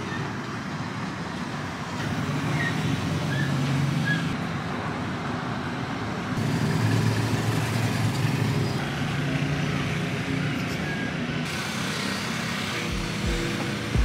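Steady outdoor traffic noise, a constant wash of passing road vehicles with a low hum that rises and falls every few seconds.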